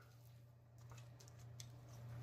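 Near silence: a few faint, soft mouth clicks from chewing a mouthful of fried chicken wing, over a low steady hum.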